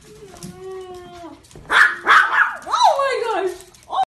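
Maltese dog vocalizing: a held whine, then a loud burst of high yips and barks about halfway through, then a drawn-out whine that slides down in pitch.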